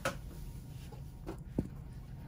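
Quiet room tone with a few short, soft clicks, the sharpest about one and a half seconds in, as the room is being made dark.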